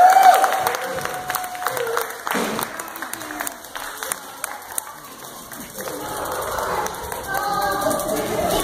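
Small audience clapping and cheering, with a high held whoop right at the start. The clapping dies down about halfway through, and crowd voices rise near the end.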